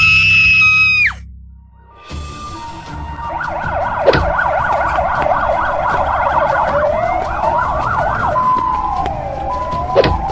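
Cartoon ambulance siren sound effect: fast, overlapping up-and-down wails that start about two seconds in and run on. It is preceded by a held high tone lasting about a second, and there is a sharp click about four seconds in.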